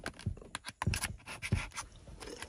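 Small irregular clicks and scratches of a USB cable plug being fitted into a laptop's port, with light handling of the laptop.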